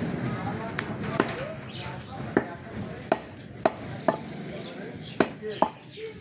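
Meat cleaver chopping pieces of beef on a thick round wooden chopping block: sharp knocks at an uneven pace, about eight in all, roughly one every half second to a second.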